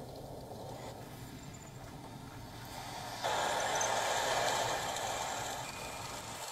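Tracked military vehicles (tanks and armoured carriers) driving, a steady noise of engines and tracks that gets louder about three seconds in.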